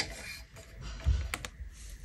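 Pencil strokes on drawing paper with the clicks and knocks of a set square and T-square being handled on a drafting board: a sharp click at the start and a louder knock about a second in, with short scratchy strokes between.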